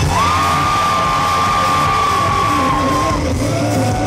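Rock band playing live through a PA, electric guitars to the fore, with a single high note held for about three seconds starting just after the beginning.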